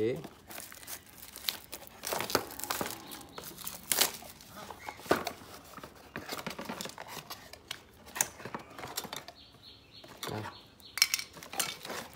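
Clear plastic packaging bag crinkling and rustling as it is handled and opened, in irregular crackles, with some handling of the cardboard box.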